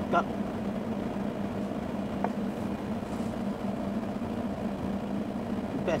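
A vehicle engine idling with a steady low hum. A short spoken word comes right at the start.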